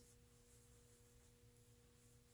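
Near silence: room tone with a faint steady hum at two pitches, one an octave above the other.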